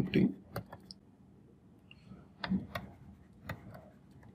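Light, irregular clicks and taps of a stylus on a pen tablet while writing by hand.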